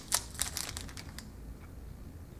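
Granola bar eaten from its plastic wrapper: the wrapper crinkles and the bar crunches as it is bitten. A run of short crackles over about the first second dies away.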